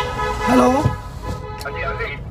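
A vehicle horn held as a steady multi-note blare that fades after about a second, with a man saying "hello" over it.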